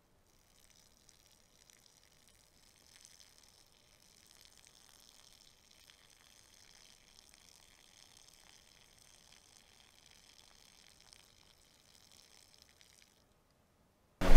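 Near silence: faint, steady hiss.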